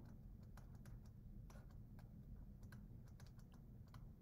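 Faint, irregular light clicks and taps of a stylus on a drawing tablet as handwriting is written, over faint background hiss.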